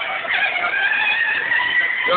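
Children's battery-powered ride-on ATV whining steadily as its small electric motor and gearbox carry a heavy adult rider.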